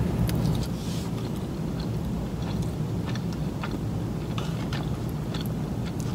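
Close-miked chewing of a mouthful of Chipotle burrito bowl (rice and meat), with small wet mouth clicks scattered throughout, over a steady low hum.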